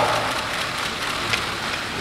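Many press cameras' shutters clicking in a dense, overlapping patter as photographers shoot a posed photo call, over the hum of a crowded hall.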